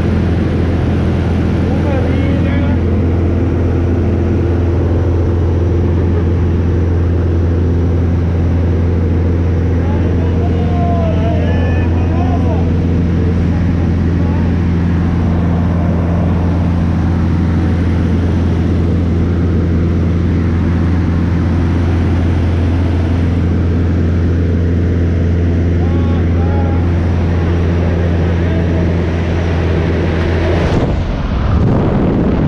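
Propeller engine of a small high-wing plane droning steadily, heard inside the cabin. Faint voices can be heard now and then beneath the drone.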